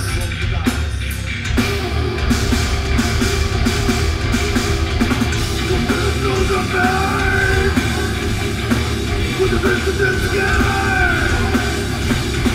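Heavy metal band playing live and loud: distorted electric guitars, bass and a hard-hit drum kit in a dense wall of sound, with no vocal line standing out.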